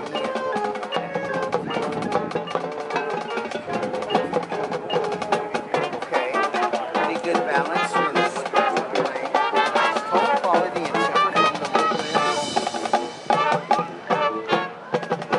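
High school marching band playing its field show: massed brass over drumline and front-ensemble percussion, with the music brightening near the end.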